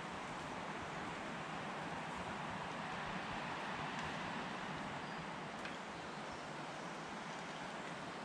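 Steady outdoor rushing background noise that swells slightly around the middle, with one faint tick about five and a half seconds in.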